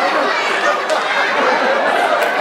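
Audience crowd chattering, many overlapping voices at a steady level.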